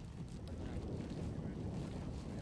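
Steady low rumble of wind on the microphone in open country.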